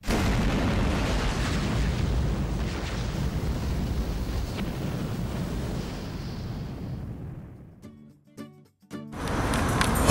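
Intro sound effect: a deep boom that starts suddenly and fades away slowly over about eight seconds, followed by a few short plucked notes.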